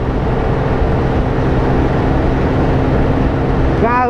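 Steady drone of a motorbike engine holding a constant speed, mixed with wind rushing over a helmet-mounted microphone.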